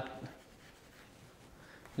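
Chalk scratching faintly on a blackboard as numbers are written.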